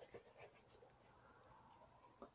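Near silence: room tone, with a few faint rustles and ticks of hands handling a pair of leather shoes in the first half second.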